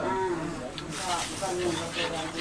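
Melted fat bubbling and sizzling in a wok as a slotted metal spatula stirs through it, with voices talking in the background.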